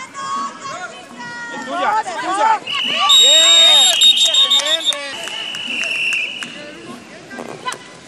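A sports whistle blown in one long, steady blast about three seconds in, the loudest sound here, with a fainter whistle tone carrying on for about two more seconds, amid players' shouts.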